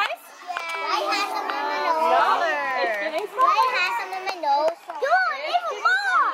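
A group of young children chattering and exclaiming over one another, several high voices overlapping.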